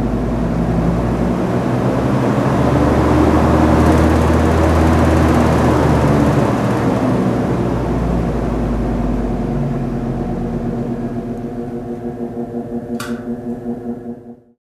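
Ventilation fans running with a steady rumble and low hum that swells about a third of the way in and eases off again toward the end. There is one sharp click near the end.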